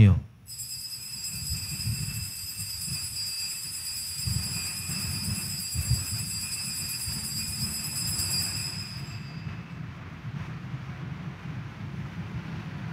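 Altar bell ringing at the elevation of the consecrated host. A high, steady ring holds for several seconds and fades out about nine seconds in, over a low room rumble.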